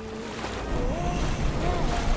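Pool water splashing and churning as a person thrashes at the surface, struggling to stay afloat.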